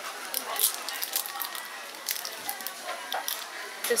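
Clear plastic wrapper crinkling and crackling in short bursts as a sandwich cookie is handled in it, over background chatter.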